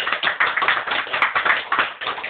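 Small audience clapping hands in applause at the end of a song, a dense, irregular patter of many claps.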